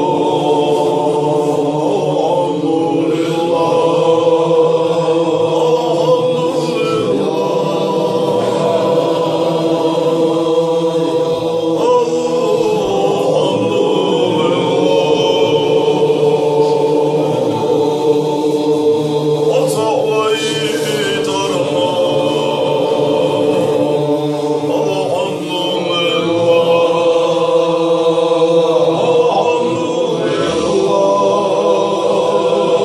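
Chechen zikr: many men's voices chanting together in unison on long, held notes.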